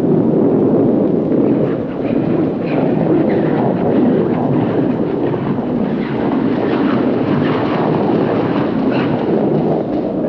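Curling stone rumbling steadily down the ice while corn brooms sweep in front of it, with faint brushing strokes over the low rumble.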